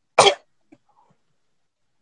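A single loud, short cough from a young person, about a quarter second in, as a staged sick cough, followed by a few faint clicks.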